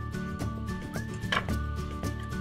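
Background music with a steady beat and held notes.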